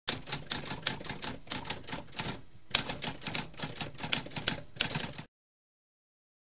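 Typewriter keys clattering in a quick, uneven run of keystrokes, with a short pause about halfway through. The typing stops abruptly a little after five seconds.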